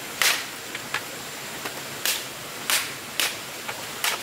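Sharp, short knocks at irregular intervals, the loudest about a quarter of a second in and three more in quick succession near the end, over a steady background hiss.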